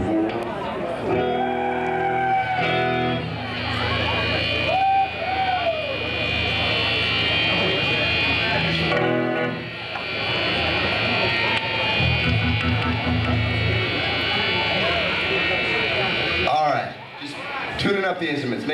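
Electric guitars being tuned through amplifiers on stage: single notes and chords held and let ring, stopping and starting again, with crowd voices shouting over them.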